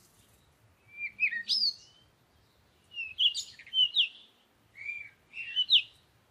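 Bird chirps in three short bouts of quick, high, rising and falling notes, about a second apart.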